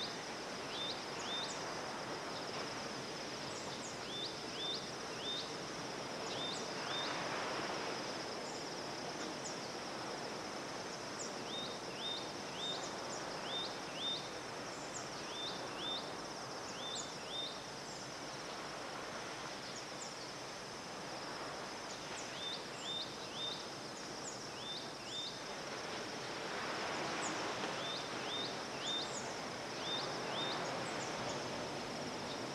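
Tropical dawn ambience: a bird repeats short rising chirps in groups of three or four every few seconds over a steady high insect hum. Under them runs the wash of surf on the reef, which swells about seven seconds in and again near the end.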